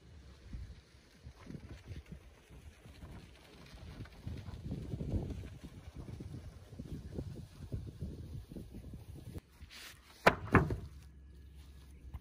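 Gusty low rumble of wind buffeting the microphone outdoors, rising and falling, with two sharp knocks about ten seconds in.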